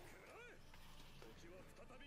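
Near silence, with only a faint, wavering voice in the background, too quiet to make out.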